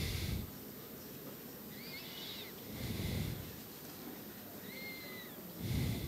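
Breathing into a handheld microphone held close to the mouth: slow breaths puffing on the mic about every three seconds. Faint, short, high squeaky chirps come in between.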